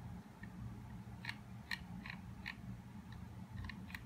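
Faint, sharp clicks over a low steady hum: four evenly spaced clicks a little past a second in, then a quick run of several more near the end.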